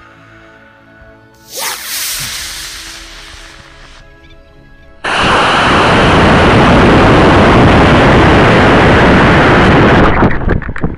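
Estes model rocket motor firing, heard from a camera on the rocket: about five seconds in a sudden, very loud, steady rush of motor exhaust and air sets in and holds. Before it there is a shorter whoosh that fades away over about two seconds.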